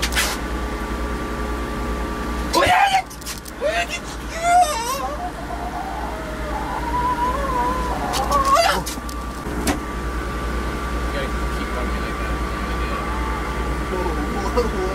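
Wordless voices, with laughter and drawn-out sliding vocal sounds, between about two and nine seconds in, over a steady low hum and a faint steady tone. There is a sharp click at the start and another near ten seconds.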